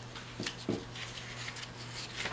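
Paper sticker sheets being handled and shuffled over a planner: faint rustling with two soft taps about half a second and three-quarters of a second in, over a steady low hum.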